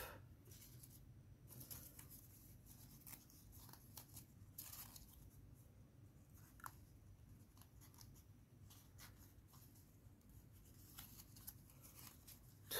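Faint, scattered rustling and crinkling of folded paper origami units as they are handled and slotted into one another.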